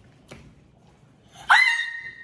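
Mostly quiet, then about a second and a half in a sudden high-pitched squeal that rises sharply and holds one steady note.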